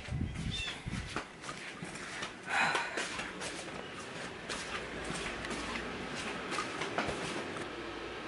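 Handling and movement noise from a hand-held camera: low thumps in the first second, then scattered light clicks and knocks, with one brief louder sound about two and a half seconds in.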